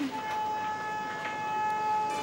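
Background score: a held electronic note, joined one after another by higher held notes into a sustained chord.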